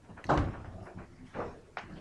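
A heavy thump shortly after the start, then two lighter knocks about a second later.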